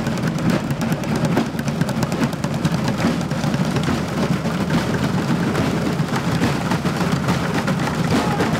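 Youth drumline beating drumsticks on upturned plastic buckets, many players at once in a fast, steady rhythm of dense strikes with a hollow low thud.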